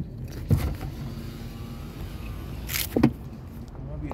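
Steady low rumble of a car heard from inside the cabin while driving, with a light knock about half a second in and a brief rustle and knock around three seconds in.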